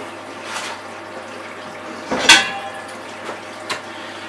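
Stainless steel stovetop pot being handled: one loud metallic clank about halfway through, with a couple of fainter knocks around it.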